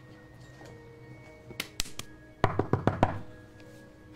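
Quick knocking on a wooden tabletop, four or five raps about two and a half seconds in after two light taps, standing in for a knock on a closed door. Soft background music plays underneath.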